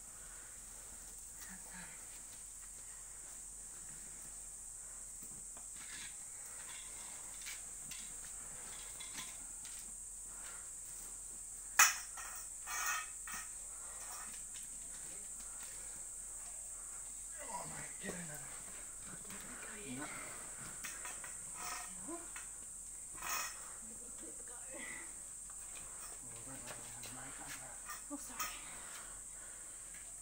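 Cotton doona cover rustling and crinkling as it is handled, with scattered faint clicks, low murmured voices now and then, and a sharp click about twelve seconds in. A steady high-pitched insect buzz runs underneath.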